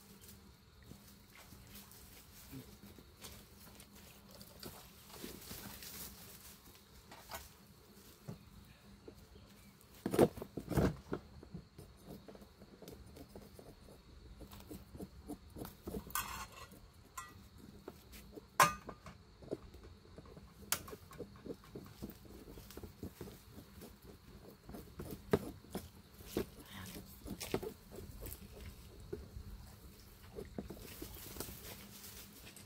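Scattered knocks, scrapes and rustling of camp cooking gear being handled, as a frying pan is set on a portable gas stove and a knife works on a case, with sharp knocks about ten and eighteen seconds in.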